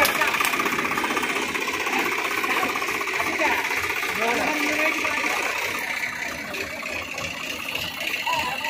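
Swaraj 744 FE tractor's three-cylinder diesel engine running with a steady, fast clatter. Faint voices are heard alongside.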